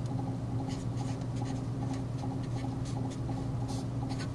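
A felt-tip marker writing on a white board: a run of short, light scratching strokes as a word is written out, over a steady low hum.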